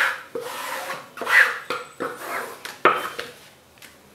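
A flat blade scraped in repeated strokes across cloth pasted onto a plywood board, pressing out the tamarind-seed paste to stick the cloth down. About half a dozen rasping strokes, roughly two a second, stopping shortly before the end.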